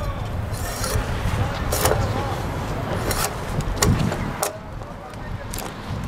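Bark being peeled off a fresh poplar pole with a hand blade: about six sharp scraping strokes at irregular intervals, over a steady low background rumble.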